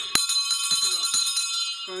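A small metal bell ringing with a jingle: one sharp strike just after the start sets off a cluster of steady high tones, with light clicks over them, and they die away near the end.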